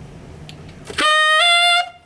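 Tenor saxophone playing two short high notes about a second in: high F, then a whole step up to altissimo G, about a second in all. The G is fingered as B natural with the high F sharp key held down, and the F as G sharp with the same key held.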